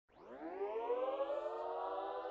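The opening of the track: a full, sustained tone that fades in and glides upward in pitch over about the first second, then holds steady, like a siren winding up.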